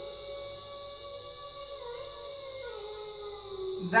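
A man's voice held in one long, slowly wavering hum with no clear words, over a faint steady high-pitched whine.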